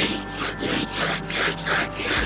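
A cloth rubbing back and forth over the rough bedliner-textured paint of a hood, about three strokes a second, wiping away oil-pen marker lines.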